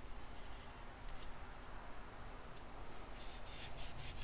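Faint rustling and a few light ticks of green painter's tape being handled and pulled free from fingers, over a low steady background hum.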